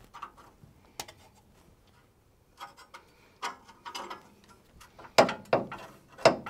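Irregular light metal clicks and clinks as the lower coil-spring retainer on a Land Rover Defender's axle is worked loose by hand, a few scattered at first and louder knocks near the end.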